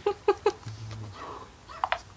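A person laughing in short, quick bursts, about four a second, that die away about half a second in; a brief softer vocal sound follows near the end.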